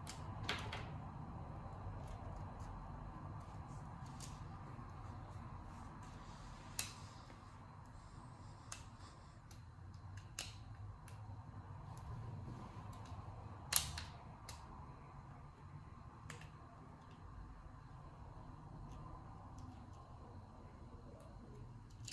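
Scattered light clicks and snaps of small plastic toy parts being pressed together as the front piece is fitted back onto a miniature plastic shopping cart. The loudest snap comes about fourteen seconds in, over a low room hum.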